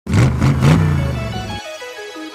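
Intro jingle: a car engine revs in three quick bursts, its rumble cutting off sharply about one and a half seconds in, under a melody of short notes stepping up and down.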